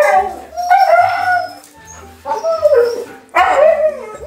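Siberian huskies howling, about four drawn-out calls in a row with the pitch bending up and down.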